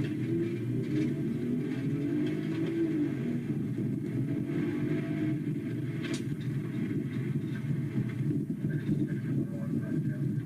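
A police cruiser driving, heard inside the cabin: a steady rumble of engine and road noise, its pitch rising and falling in the first few seconds. A single sharp click about six seconds in.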